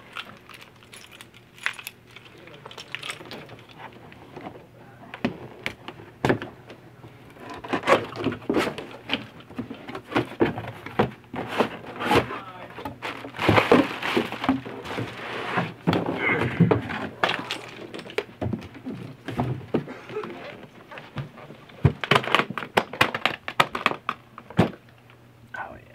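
A cardboard shipping carton being opened by hand: a box cutter slitting the tape, then the flaps pulled open and the contents handled. It comes as an irregular run of scrapes, rustles and knocks, busiest in the middle.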